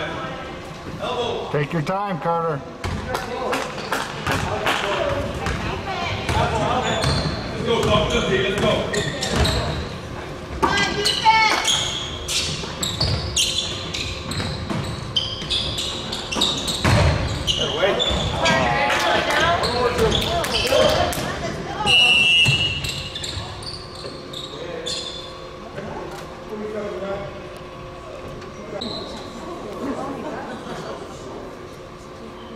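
A basketball bouncing on a hardwood gym floor again and again during play, with players and spectators calling out indistinctly, echoing in a large hall.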